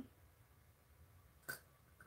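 Near silence: quiet room tone, broken by one short click about a second and a half in.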